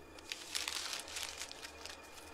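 A sheet of paper rustling and crinkling as it is handled, in a run of short crackles.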